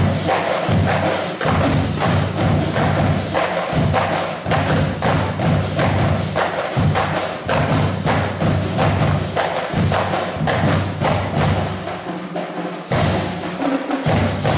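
High school drumline playing a cadence on marching snare drums, tenor drums and bass drums: dense rapid sticking over bass drum notes. The low bass drum part drops out briefly near the end, then comes back in.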